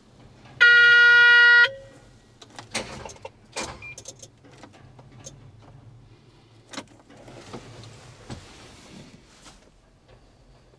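A loud, steady electronic warning tone from the machine's cab sounds once for about a second as the key is turned, followed by scattered clicks and knocks from the controls. No engine cranks or runs: the machine fails to start even on new batteries, and the cab loses power.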